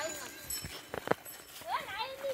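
Two quick, sharp knocks close together about a second in, then a short stretch of a person's voice near the end.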